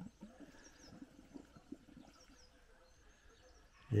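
Faint outdoor quiet with small birds chirping in the distance, a few short high calls scattered through.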